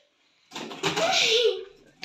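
A brief breathy voice, about a second long, starting half a second in after dead silence.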